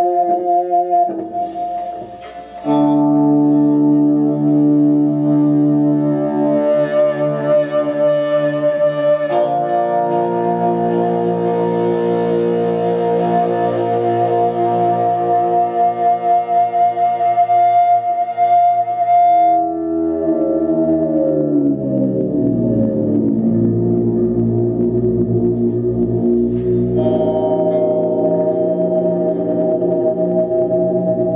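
Overdriven electric guitar holding long notes that sustain into feedback, played through the PA and a Headrush FRFR monitor speaker. About two-thirds of the way through, the pitch slides slowly down before settling on a new held note, and near the end it steps up to a higher sustained note.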